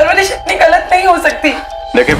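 A woman crying, her voice wavering through sobs, over background music.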